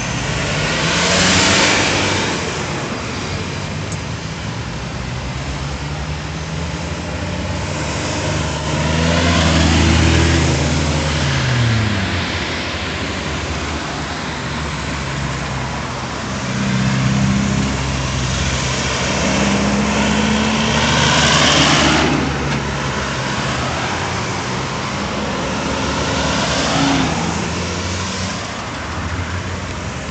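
Road traffic at a busy roundabout: cars and pickups driving round and past close by, their engines rising and falling in pitch as they slow and pull away, with tyre noise. About five vehicles pass loudly, swelling and fading over the ongoing traffic.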